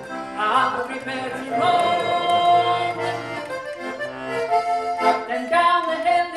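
Small button squeezebox playing an instrumental passage between verses of a traditional English folk song: a tune of changing notes over held chords.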